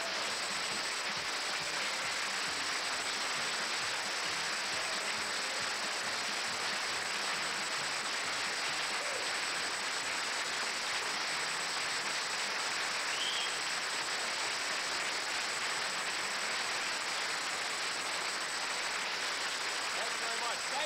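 A studio audience applauding steadily for about twenty seconds as a comedian comes on stage.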